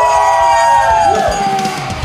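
Brass hand bell ringing out, rung for a first-time tattoo client, while several people whoop in long held cheers that fall away near the end.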